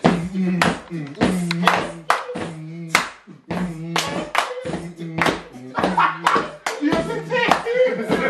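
Group of people clapping along to music with a steady beat, with voices over it.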